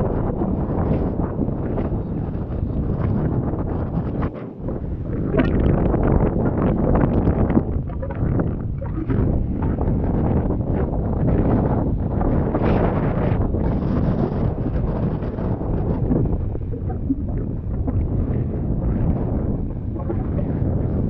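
Strong wind blowing across the microphone, a heavy rumble that rises and falls in gusts and eases briefly about four seconds in.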